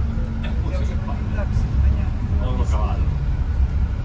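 Double-decker bus running in traffic, heard from inside the upper deck as a steady low rumble, with faint voices of people talking.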